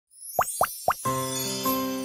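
A brief shimmer, then three quick rising cartoon 'bloop' sound effects, then the instrumental intro of a children's song starting about a second in, with steady sustained chords.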